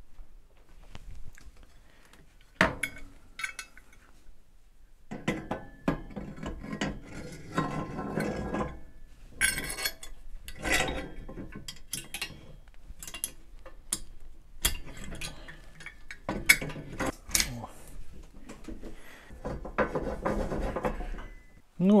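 Steel coil return springs and their hooks clinking and rattling against the steel frame of a bottle-jack shop press as they are hung in place, with scattered metallic knocks and clatter; one sharper knock comes a couple of seconds in.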